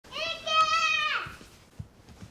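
A young child's high voice giving one long, held call of about a second that falls away at the end.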